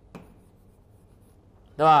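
Chalk writing on a blackboard: one faint short stroke just after the start, then quiet room noise until a man's voice speaks near the end.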